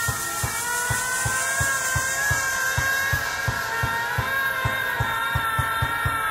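Minimal techno in a breakdown, with the heavy kick drum dropped out. Sustained synth tones hold under a light, quick percussive pulse, and a hiss-like wash of high noise fades away across the first few seconds.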